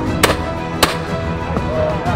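Two shotgun shots about half a second apart, a quick double at birds overhead, heard over background music.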